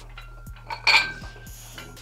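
Metal plates of a plate-loaded dumbbell clinking once during a curl, a short sharp rattle about a second in.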